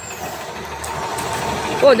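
A steady engine-like hum, most likely a motor vehicle, growing louder, with a man's voice starting near the end.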